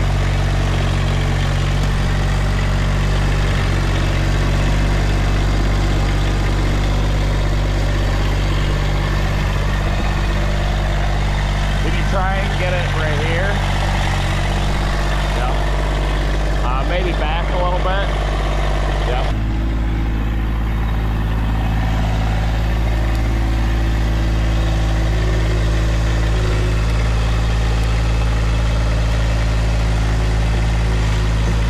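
Massey Ferguson compact tractor's diesel engine running steadily while it works its front loader, heard from the seat; the engine note shifts about two-thirds of the way through.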